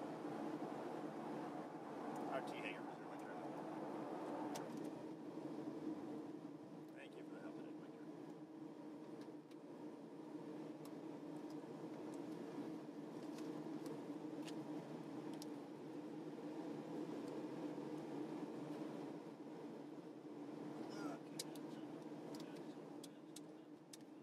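Twin Pratt & Whitney PT6A turboprops and propellers of a Beechcraft King Air 300, heard inside the cockpit as a steady drone during the landing rollout and taxi. A brighter hiss over the drone fades about five seconds in.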